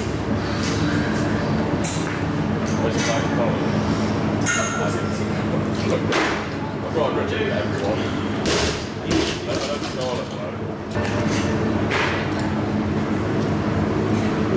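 Loaded barbell with bumper plates clanking and thudding through a clean and jerk: several sharp knocks of bar and plates. Indistinct voices and a steady gym hum run underneath.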